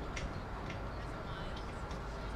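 Outdoor ambience at a football field: a low, steady rumble with about four faint, sharp clicks and distant voices.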